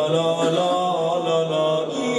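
A male reciter chanting a Persian mourning lament (maddahi) into a microphone, sliding up at the start and then holding long, drawn-out notes.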